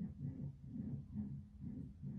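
An unexplained low hum that seems to come from inside a house wall, wavering and pulsing a few times a second. It seems tied to the air vents and to the pool coming on.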